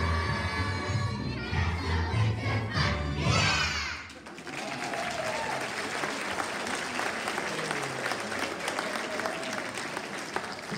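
A children's choir sings over a bass-heavy accompaniment, and the song ends about four seconds in on a rising glide. Audience applause follows and runs on steadily, with faint voices under it.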